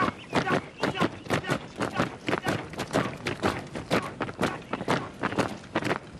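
Boots of a column of soldiers marching on a dirt and gravel path: a continuous run of footfalls, about three to four a second and not quite in step, cutting off at the end.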